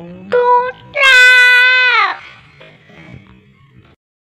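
Young child's high voice: a short rising call, a brief note, then a long drawn-out call of about a second that drops in pitch at its end, followed by faint sounds.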